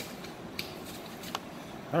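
Faint handling noise: three short, light clicks spread through a quiet stretch, as a phone camera is moved over a cardboard box of packing paper.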